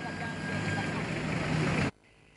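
Street background noise with vehicle traffic and faint voices, growing slightly louder, then cut off abruptly just before the end.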